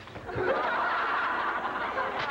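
Audience laughter breaking out about a third of a second in and carrying on.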